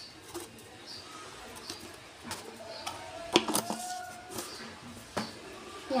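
Quiet room tone broken by a few faint, sharp clicks, the loudest about three and a half seconds in, with a faint held call lasting about a second a little past halfway.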